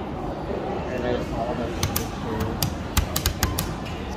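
A quick, uneven run of about eight sharp clicks in under two seconds, starting about two seconds in, over faint background voices.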